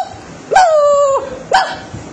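A dog's calls: one drawn-out call beginning about half a second in and falling a little in pitch, then a short one near the end.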